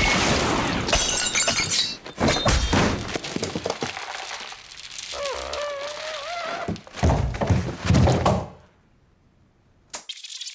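Stylised film fight sound effects: a gunshot's echo ringing out, then a run of sharp thunks and breaking hits, a wavering squeal in the middle, and a last loud burst that cuts off into silence near the end.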